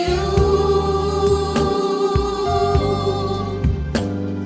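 A small gospel vocal ensemble sings in harmony, holding long notes over an accompaniment with a sustained bass and a few drum hits.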